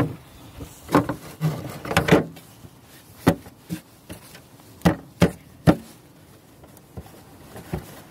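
Plastic engine cover being fitted back over the V6 and pressed onto its mounts: about eight sharp knocks and snaps spread over several seconds, with some rubbing of plastic early on.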